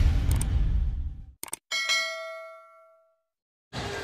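The tail of the intro music fades out. Then comes a short click and a single bright bell ding that rings out for about a second and a half: a subscribe-button click-and-ding sound effect.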